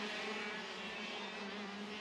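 A pack of KZ2 125cc two-stroke gearbox karts running on the circuit, heard as a steady engine drone.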